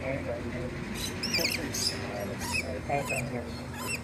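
Lorikeet giving short, squeaky high-pitched chirps: a quick run of them about a second in, then scattered single chirps.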